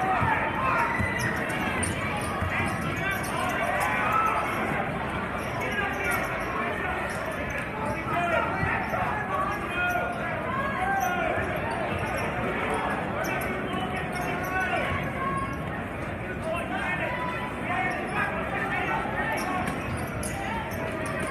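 Basketball being dribbled on a hardwood court, over the steady chatter of a crowd of spectators talking in the gym.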